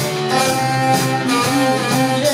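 Live northern soul band playing an instrumental passage, horns holding long notes over the band. Recorded from within the audience, so the sound is loud.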